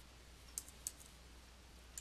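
A few faint computer keyboard and mouse clicks as a number is typed into a field: two quick taps about half a second in, another just after, and one more at the end.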